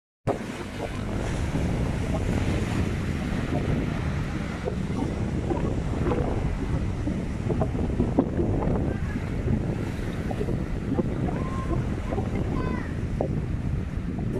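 Sea waves breaking and washing over the rock blocks of a breakwater, a steady rushing surf with wind buffeting the microphone.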